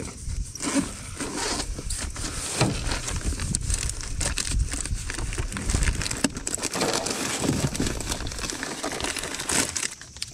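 Close-up rustling and crinkling handling noise, with irregular small clicks, as a soft-plastic paddle tail bait is worked off a fishing hook, over a steady low rumble.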